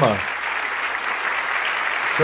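Television studio audience applauding steadily.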